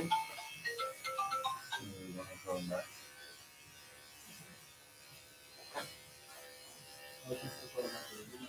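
Electric dog grooming clippers humming faintly as they trim a Yorkshire terrier's head. A brief tune of stepped notes plays over the first couple of seconds.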